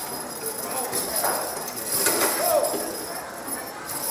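Team of draft horses stepping on a dirt track, their hooves knocking and harness chains jingling, with crowd voices behind.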